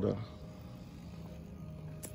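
The end of a man's spoken word, then a faint, steady low background hum with no other events.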